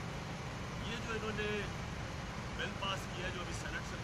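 A voice speaking in short stretches over a steady low rumble.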